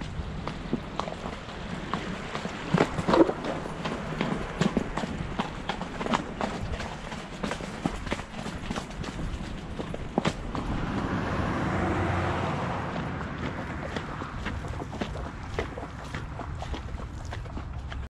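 Hoofbeats of an off-the-track Thoroughbred moving along a dirt and grass trail, many quick irregular strikes over a steady low rumble of wind on the microphone. A broader rush of noise swells and fades about twelve seconds in.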